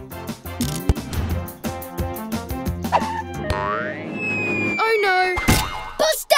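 Upbeat cartoon music with a beat, then cartoon sound effects: a rising glide about three and a half seconds in, followed by a long thin whistle-like tone sliding slowly downward near the end.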